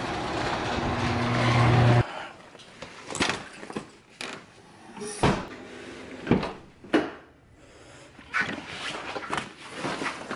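A loud, low hum with a growling edge swells for about two seconds and cuts off abruptly. Then come scattered footsteps and sharp clicks as a white BMW's door handle is pulled and the door opened, with knocks and rustling as he climbs into the seat.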